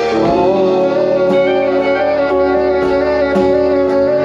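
Live band playing a song: drums, electric guitar, bass and keyboard together under a sustained melody line, with no singing.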